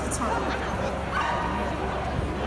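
A dog barking twice, about a second apart, over the background noise of a large hall.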